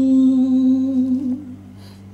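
A voice humming one long held note, wavering slightly before it fades out about one and a half seconds in; a faint low steady hum remains after it.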